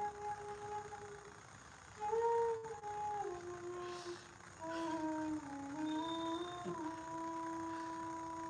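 Bansuri flute playing a soft, slow melody of long held notes that step gently from one pitch to the next. It fades briefly about a second in, then comes back and ends on a long held note.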